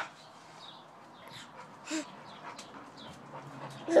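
Pit bull giving a short, quiet whimper about halfway through.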